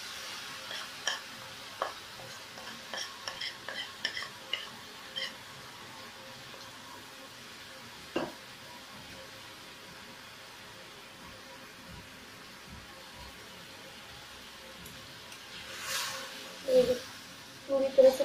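Lumps of jaggery tipped from a bowl and crumbled into an aluminium kadai holding a little hot water, with light clinks and taps over the first few seconds and a faint steady sizzle afterwards. A metal spatula scrapes the pan near the end.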